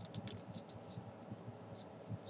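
Origami paper crinkling faintly in the fingers as it is folded and creased: a run of small crackles, most of them in the first second.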